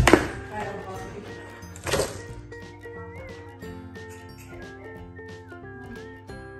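Two loud plastic knocks or cracks, one right at the start and one about two seconds in, as a large plastic toy surprise egg is forced open, over steady background music.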